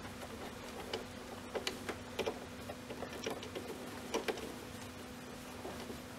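Soft rustling and scattered small clicks of light cotton fabric being handled and wriggled back into a sewing machine's wide hem foot while the machine is stopped, over a steady low hum.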